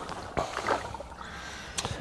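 Water sloshing inside a sealed plastic bucket with a screw-on Gamma Seal lid as it is tipped onto its side, with a light plastic knock shortly after the start and another near the end.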